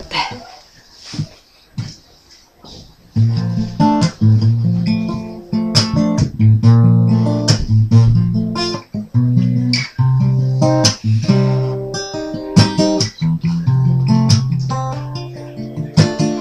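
An acoustic guitar plays a chord intro, its chords strummed, starting about three seconds in after a few soft knocks.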